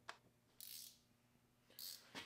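Near silence with faint hand-tool handling noise as a small bolt is fitted: a light click just after the start, then two short hissy rustles, one about half a second in and one near the end, over a faint steady hum.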